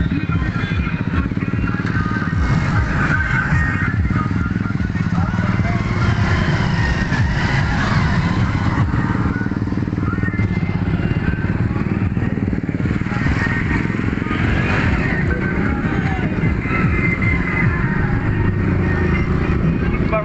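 Motorcycle engine running steadily under way, with a constant low rumble, and voices and music in the background.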